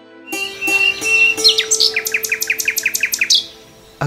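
Bird chirping over background music: a quick run of falling chirps, about five a second, lasting about two seconds over a held musical tone, then fading out.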